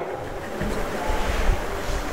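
Steady rushing background noise with a low rumble in a large hall, with no clear single event.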